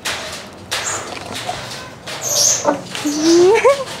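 A wire-mesh cage being handled, with a few light knocks and rattles, then a short rising whine-like vocal sound near the end.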